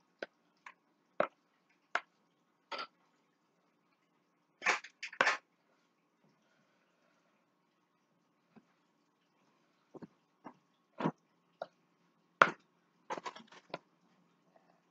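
A spatula scraping and knocking against a mixing bowl as brownie batter is scraped out into a pan. A dozen or so short, irregular scrapes and knocks, with longer scraping strokes about five seconds in and again near the end.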